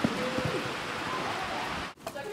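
A horse's hooves thud a few times on the arena footing as it lands over a small jump, under a steady hiss.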